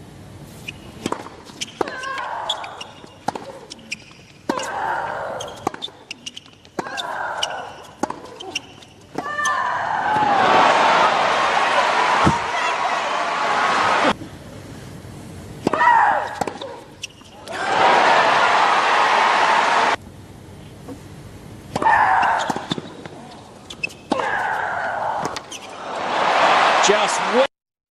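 A tennis rally on a hard court: sharp racquet strikes and ball bounces, with a player's vocal grunt on a shot every two to three seconds. Crowd applause and cheering break out in long stretches in the middle and again near the end.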